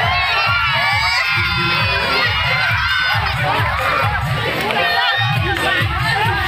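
A large crowd of boys and young men shouting and cheering excitedly, many voices overlapping, with a steady low beat underneath.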